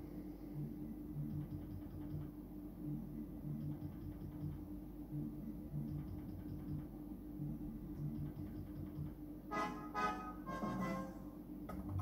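Electronic game music from a Merkur video slot machine: a low, repeating melody while the reels spin, with a brighter run of chiming tones near the end as a small line win lands.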